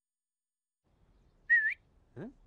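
Silence, then about one and a half seconds in a single short whistled note with a slight upward wobble, the opening sound effect of a TV sponsorship ident's jingle.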